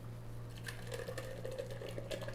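Blended watermelon juice and pulp starting to pour from a tipped, hollowed-out watermelon into a blender jar: a faint pouring sound from a little under a second in, with small scattered clicks.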